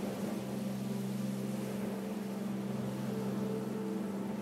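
Soft ambient background music: a steady low drone of held notes, with fainter higher notes swelling in and out over a faint hiss.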